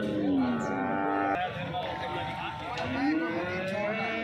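Cattle mooing: one long call that falls in pitch and breaks off about a second and a half in, then a shorter rising call near the end, over background crowd noise.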